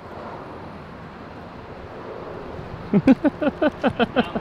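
Steady outdoor background noise, then laughter breaking out about three seconds in as a quick run of loud, short bursts.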